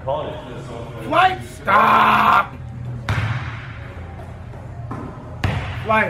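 A basketball bouncing on an indoor hardwood court, with sudden hits about three and five and a half seconds in, and a voice briefly in the first half.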